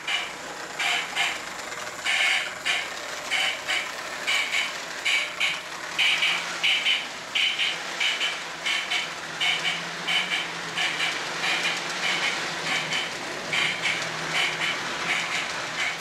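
O gauge model train running over hollow plastic Lionel FastTrack on an elevated trestle line: a steady rolling rumble with rhythmic paired clacks as the wheels cross the track joints, and a low motor hum coming in about six seconds in. This is the racket that hollow plastic track makes under running trains, made louder by the empty space beneath the raised line.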